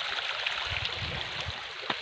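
Shallow creek water running and trickling over rocks, a steady even rush. A brief low rumble comes in the middle, and a single click sounds just before the end.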